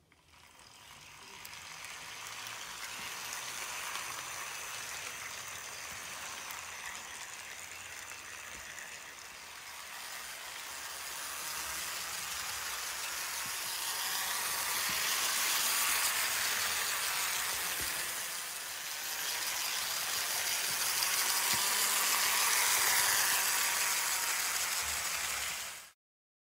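Katsumi Diamond Series C59 HO-scale model steam locomotive running around a loop of track: a steady mechanical whir of its motor and gearing with the wheels rattling on the rails. It grows louder and fades as it comes round, loudest about two-thirds of the way in and again near the end, then cuts off.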